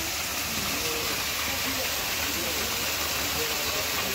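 Water pouring steadily down an artificial rock waterfall, a constant, even rush of falling and splashing water.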